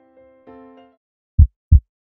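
A soft keyboard jingle fades out, then a heartbeat sound effect: two loud, low thumps about a third of a second apart, a lub-dub, near the end.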